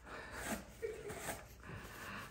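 Quiet stifled laughter and breathing from a woman, in short bursts.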